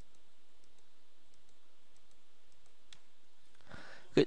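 Steady low background hiss, with a single faint computer mouse click about three seconds in that selects a different layer. A short soft noise follows near the end.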